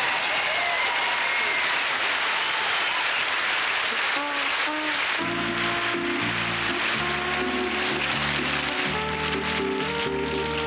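Studio audience applauding and laughing. About five seconds in, a short piece of band music begins: held chords and bass notes that change about once a second, over a light, steady cymbal tick.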